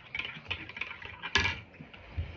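Close-up mouth sounds of a person chewing with a full mouth, a run of small wet clicks and smacks, with one louder click about one and a half seconds in.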